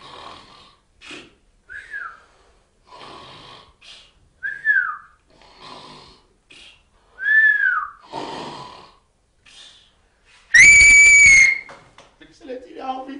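A man snoring in comic fashion, each snoring breath followed by a short whistle that falls in pitch. Near the end comes a loud, steady whistle held for about a second.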